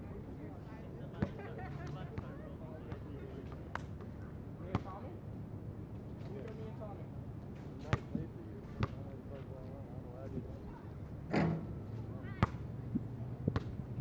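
A basketball bouncing on an asphalt court, as single sharp thuds spaced irregularly a second or more apart, with a louder thud about eleven seconds in. Players' voices can be heard faintly in the background.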